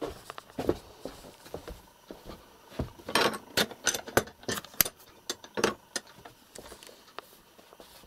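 A run of irregular sharp clicks and knocks, densest and loudest about three to five seconds in: handling noise as a camera is carried and moved about.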